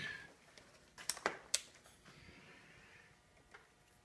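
A few light clicks and taps from items being handled on a cluttered workbench, three sharp ones close together about a second in and a faint one near the end, over quiet room tone.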